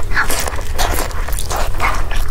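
Close-miked biting and chewing of a fried wrap stuffed with glass noodles: a run of irregular mouth and food sounds, one after another.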